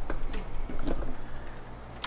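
A few light ticks and clicks from a screwdriver working wire at the base of a breaker subpanel, over a low steady hum.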